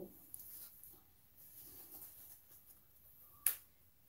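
Quiet room with faint rustling, broken by one sharp click about three and a half seconds in.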